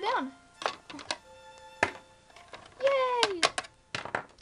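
Light plastic clicks and taps of toy pet figurines being hopped across a plastic playset. Two short wordless vocal sounds come from a young voice, one at the start and one about three seconds in, over faint background music.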